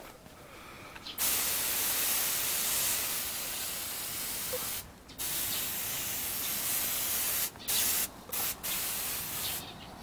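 Hand pump-up pressure sprayer hissing as it sprays a fine mist onto tomato plants: a long spray of about three and a half seconds, a second of about two seconds, then three short bursts near the end.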